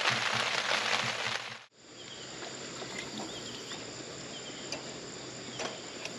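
Rain hissing steadily on a tent, cutting off suddenly under two seconds in. It gives way to quieter outdoor ambience with faint scattered chirping and a few soft clicks.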